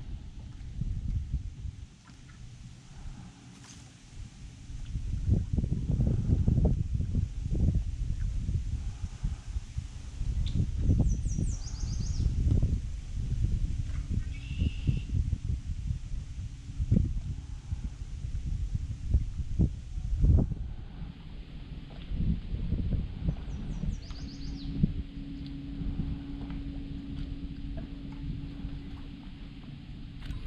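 Outdoor lakeside ambience: an uneven low rumble, with short bird chirps about eleven seconds in and again about twenty-four seconds in, and a faint steady hum in the last part.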